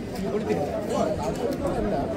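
Crowd chatter: many people talking at once around the camera, with no single voice standing out.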